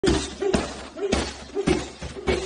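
Boxing gloves landing a run of punches on a padded body protector, about two blows a second, four in all.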